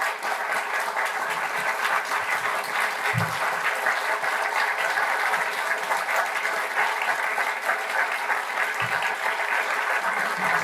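Large audience clapping steadily in a standing ovation, many hands at once making a dense, even crackle.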